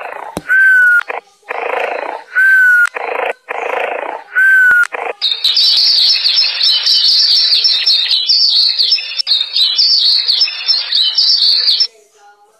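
Cartoon snoring sound effect: a noisy breath alternating with a short whistle, repeating about once a second. About five seconds in it gives way to dense birdsong chirping, the morning-wake-up cue.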